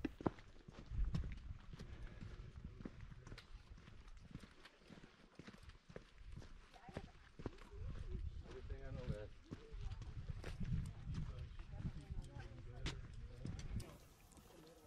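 Footsteps of hikers walking on sandstone slickrock, a string of irregular light scuffs and taps, over a low rumble of wind on the microphone.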